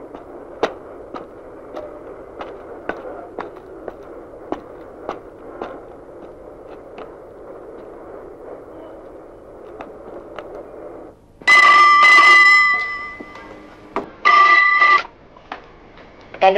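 Footsteps at a walking pace over a steady outdoor background hum for about eleven seconds. Then a telephone rings loudly twice: a long ring, a short pause, and a shorter ring.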